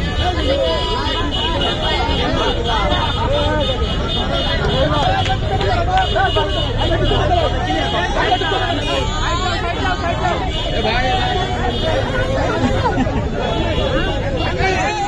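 Crowd babble: many people talking and calling out over each other at once, with a low steady rumble underneath that eases about halfway through.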